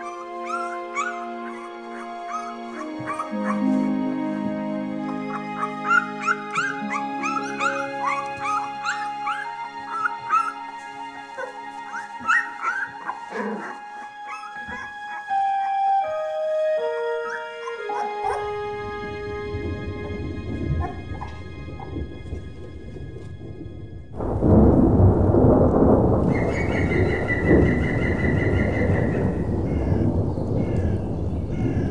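Red fox cubs squeaking and whimpering over orchestral music with long held notes. About 18 seconds in a low rumble builds, and at about 24 seconds a loud peal of thunder breaks and rolls on as a spring thunderstorm moves in.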